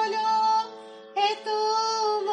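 Music: a high singing voice holds a long note, breaks off briefly, then holds another, over a steady drone.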